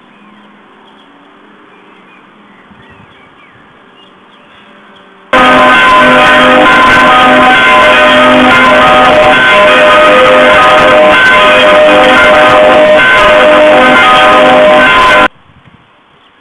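Church bells ringing, very loud and overloaded, as from directly beneath the microphone. Several steady bell tones overlap; the ringing begins abruptly about five seconds in and cuts off suddenly about ten seconds later, after a faint background.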